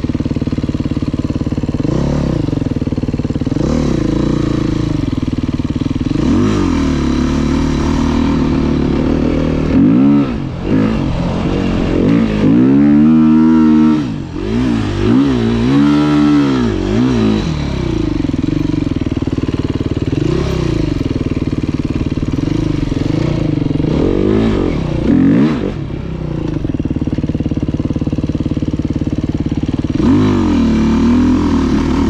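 Enduro dirt bike engine running under way, the throttle opening and closing in repeated rising and falling revs. The revs swell hardest and most often about ten to seventeen seconds in, with another sharp rise near the end.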